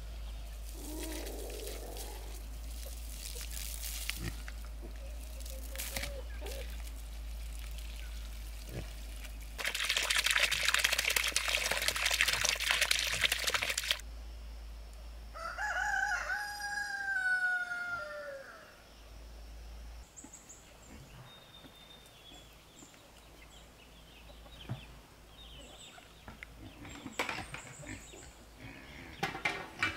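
A rooster crowing once, a long call just past the middle that holds its pitch and then falls away at the end. Before it comes several seconds of loud rushing noise that cuts off suddenly.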